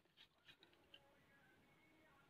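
Near silence, with a few faint soft ticks in the first second.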